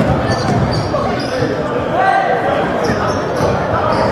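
Basketball bouncing on a hardwood gym floor during play, with spectators' voices, all echoing in a large gymnasium.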